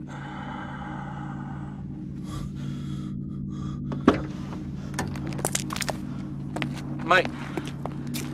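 A low, steady soundtrack drone of held tones, with a high shimmering ring over it for the first two seconds. About four seconds in comes a sharp click, then scattered light clicks and taps. A man calls out "Mate" near the end.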